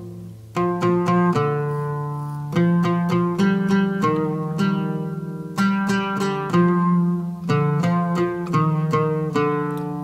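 Oud played solo: the plain, unornamented first phrase of a hymn melody in maqam Ajam. It is a line of single plucked notes, each ringing and fading, starting about half a second in.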